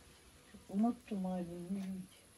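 A woman's voice: a short rising syllable about two-thirds of a second in, then one note held at a nearly steady pitch for about a second, like a hum or drawn-out vowel.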